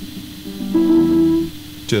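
Heavily amplified background noise from a recorded guitar track before the part starts: hiss and a steady buzz, with a sustained guitar tone swelling in about half a second in and fading a second later. This is unwanted pre-roll noise that should be removed before mixing.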